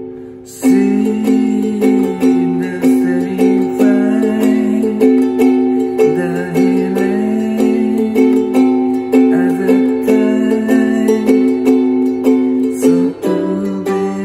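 Ukulele with a capo, played instrumentally. A chord rings out and fades, then the playing starts again about half a second in: picked notes over ringing chords, with a short break near the end.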